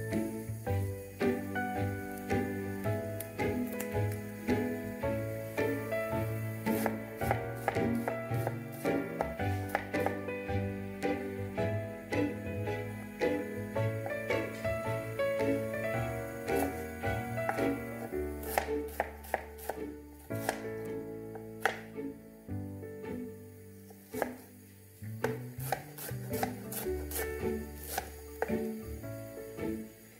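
Kitchen knife cutting strawberries on a wooden chopping board: a run of irregular knocks of the blade on the board. Background instrumental music with held notes plays underneath.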